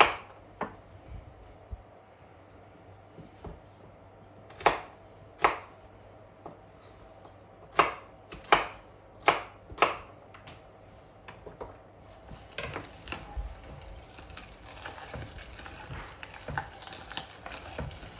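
Century-old hand-cranked Alexanderwerk meat grinder working chunks of vegetables. There are sharp knocks, several in pairs, in the first ten seconds. From about twelve seconds there is a steadier grinding with many small clicks as the vegetables are pushed through.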